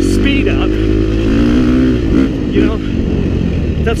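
KTM 350 XC-F's single-cylinder four-stroke engine running as the dirt bike is ridden along a rough dirt trail, its pitch rising and falling with the throttle.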